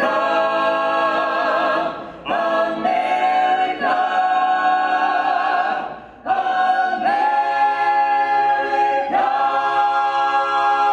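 A small mixed a cappella choir of men and women singing unaccompanied in close harmony, holding long chords. The phrases break briefly about two and six seconds in.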